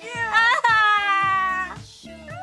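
A woman's long, high mock wail, an exaggerated drawn-out cry sagging slightly in pitch, over background music with a steady beat.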